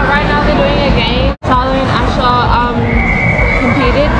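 Overlapping voices with high-pitched squeals, cut by a brief dropout about a third of the way in. Near the end a steady high tone holds for about a second.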